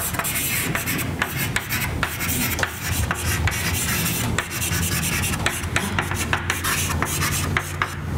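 Chalk writing on a blackboard: a continuous scratchy rasp broken by many quick taps, stopping near the end.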